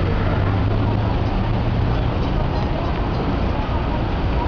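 Steady city traffic noise, a low rumble of cars and trucks, with voices mixed in.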